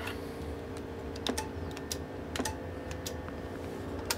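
About seven sharp clicks and taps, irregularly spaced, from working the switches of a Palomar 90A linear amplifier and handling a hand microphone, over a steady low electrical hum.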